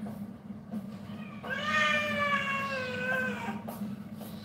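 A domestic cat gives one long drawn-out meow lasting about two seconds, starting about a second and a half in. Its pitch rises at the start and then slowly falls.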